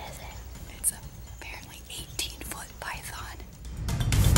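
Soft whispering, with a brief click about a second in.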